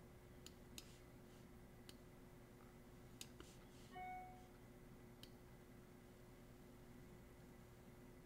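Near silence: faint room hum with scattered soft computer mouse clicks while a brush mask is painted, and a brief soft tone about four seconds in.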